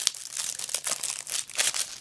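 Plastic wrapping on a deck of trading cards crinkling in quick irregular crackles as hands strip it off the deck.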